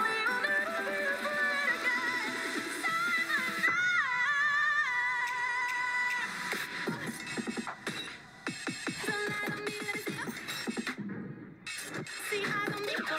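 Edited pom-routine dance music mix: electronic pop with pitched melodic lines and a wavering, processed vocal-like line a few seconds in. The music briefly drops out just before the end.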